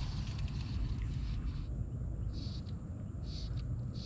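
Low rumble of wind and handling noise on a chest-mounted action camera's microphone, with a few faint, short high-pitched chirps in the second half.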